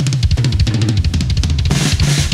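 Rock drum kit played fast in a metal song: a dense run of bass drum, snare and cymbal hits, about fifteen a second, with heavy cymbal crashes near the end.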